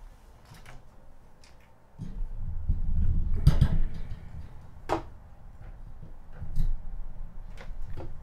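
Microphone handling noise as a boom-mounted microphone is moved and adjusted: low thuds and rubbing, loudest a couple of seconds in, with a few sharp clicks after.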